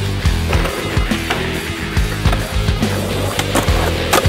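Skateboard clatter from street skating: the sharp clacks of the board popping, landing and grinding, with wheels rolling on concrete, over background music with a steady low bass.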